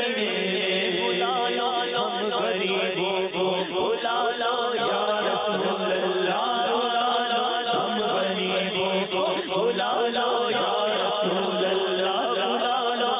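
Male voice singing an Urdu naat (devotional poem) into a microphone in a chanting style, over a steady low drone that runs on beneath the melody.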